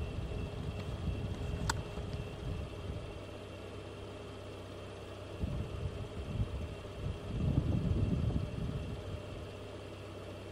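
A vehicle engine idling steadily, with irregular low rumbling gusts that swell again about seven to eight seconds in. A single sharp click sounds under two seconds in.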